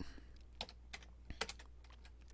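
A few faint, scattered computer keyboard keystrokes as commands are typed at a terminal.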